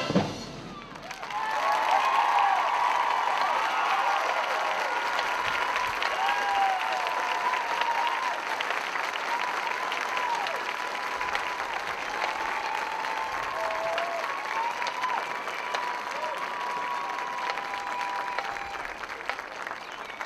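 A marching band's final chord cuts off at the very start. After a brief lull, a stadium crowd applauds and cheers, with whoops over the clapping, slowly easing off toward the end.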